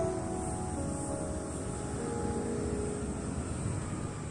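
Soft background piano music holding a few sustained notes, sparse and thinning, over a steady low outdoor rumble.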